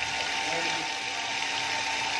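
Water refilling station's pump and filter plumbing running: a steady hum with a constant hiss of water.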